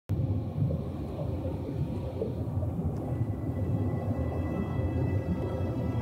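A low, churning ambient rumble, a cinematic sound-design bed, with faint steady high tones held above it.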